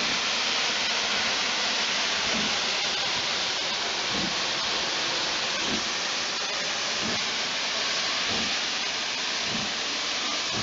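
Steam locomotive, an LMS Stanier Black Five 4-6-0, hissing steam with a loud, steady, unbroken hiss while standing at the platform.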